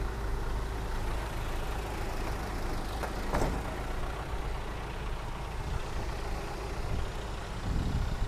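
A light truck's Hyundai engine idling steadily, with one sharp click about three seconds in.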